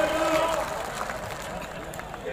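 A voice shouting a long drawn-out call, held steady for over a second and fading near the end, over the noise of a large outdoor crowd.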